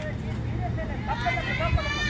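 Several high-pitched girls' voices calling out across an outdoor ballfield, starting about half a second in and busier near the end, over a steady low rumble.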